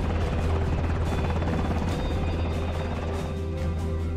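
Black Hawk helicopter hovering, its rotors beating steadily under a film score. About three seconds in, the rotor noise drops away and the music is left on its own.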